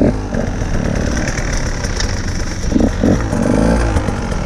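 Dirt bike engine running, then opened up near the end as the bike pulls away, heard from a helmet-mounted camera.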